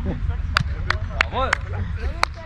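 A man's short cheer, "Jawohl," about a second in, over a steady low rumble and several sharp clicks.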